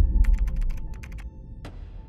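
A quick run of about a dozen sharp clicks, like fast keyboard typing, followed by one last click a little later, over a deep low rumble that fades away.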